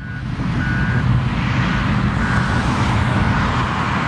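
A vehicle engine running steadily, with a faint short beep repeating about every 0.7 seconds.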